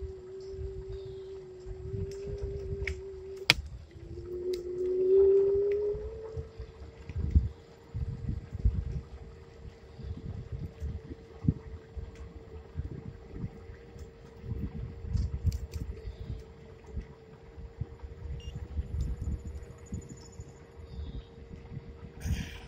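A steady motor whine from the vehicle being ridden, rising in pitch about five seconds in and then holding, as on speeding up. Irregular wind rumble on the microphone runs under it, with a sharp click a few seconds in.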